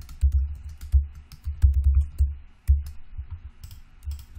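Typing on a computer keyboard: irregular quick runs of key clicks, each with a dull low thud, as a word is typed out.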